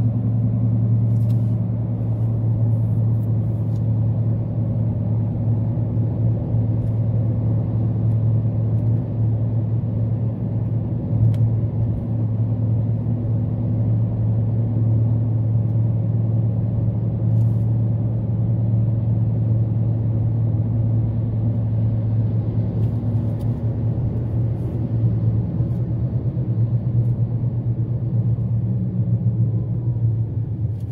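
Steady low rumble of a car's engine and tyres on the road while driving, heard from inside the cabin.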